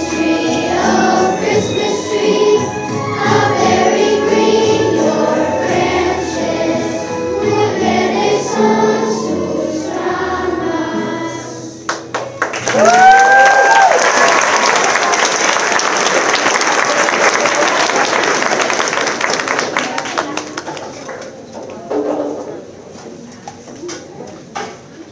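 Children's choir singing with musical accompaniment. The song ends about twelve seconds in and the audience breaks into applause with a whooping cheer, and the clapping dies away over the last few seconds.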